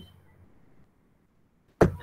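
Near silence between spoken words: the tail of one word at the very start, then dead quiet, and the next word begins with a sharp onset near the end.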